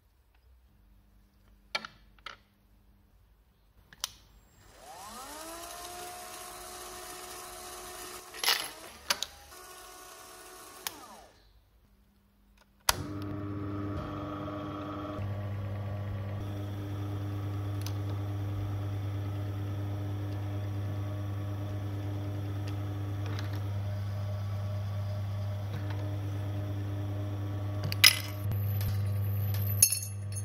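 Light clicks of a brass case being handled on a metal tool, then a small motor spins up with a rising whine and runs for several seconds before stopping. About a third of the way in, the belt-driven electric motor of an automated Lee APP press starts and runs steadily with a deep hum, with a sharp metallic click near the end.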